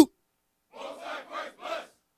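Congregation shouting a short response together in four quick syllables, answering the call to salute, heard fainter than the leader's voice.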